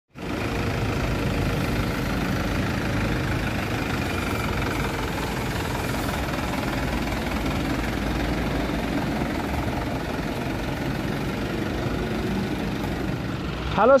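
Diesel engine of an Isuzu Elf Giga NLR microbus running steadily at a constant speed.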